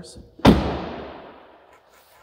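Rear door of a 2023 Jeep Wrangler four-door slammed shut once, a single loud thud about half a second in, echoing away over a second or so.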